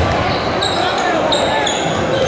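Basketballs bouncing on a hardwood gym floor during warmups, with several short high squeaks from sneakers on the court, over a steady background of voices chattering.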